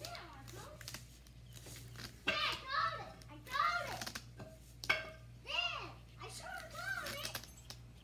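A young child's high voice chattering in short rising-and-falling calls, most of it in the second half, over a steady low hum.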